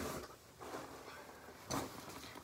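Rustling and handling noise of a fabric backpack as a binder is packed into it, with a louder brief brush near the end.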